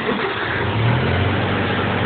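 Farmall 404's four-cylinder LP-gas engine starting at once and running, settling to a steady speed about a second in. It fires right up on newly changed ignition points, fitted because it had been dying and then not wanting to start.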